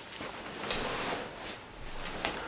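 Soft rustling and handling noise of a person shifting and reaching toward the camera, with a faint click about a second in.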